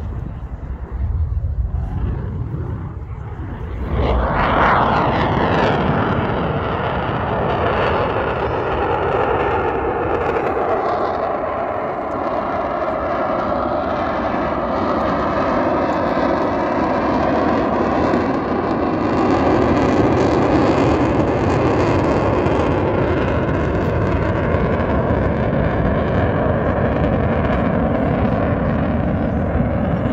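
Fighter jet flying past. Its engine noise swells suddenly about four seconds in and then stays loud, with whining tones that slowly fall in pitch as it goes by.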